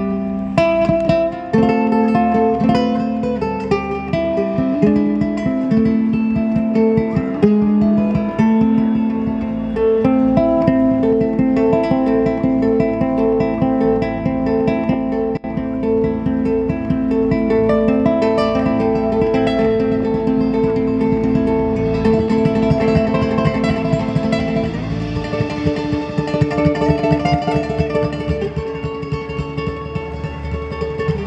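Ukulele played live as an instrumental: a melody of plucked and strummed notes over a steady rhythm, with bass and drums behind it.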